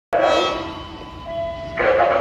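A station public-address chime: several ringing tones that sound together just after the start and fade, with one more tone about a second later. Near the end a voice over the PA loudspeakers begins an announcement.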